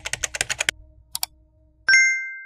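Keyboard-typing sound effect: a quick run of key clicks, two more clicks a moment later, then a bright ding near the end.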